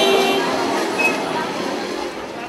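Busy street noise: a crowd of voices mixed with traffic, with a couple of short high tones, one just after the start and one about a second in.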